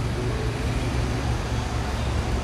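Street ambience: a steady low rumble of road traffic and vehicle engines under a constant wash of city noise.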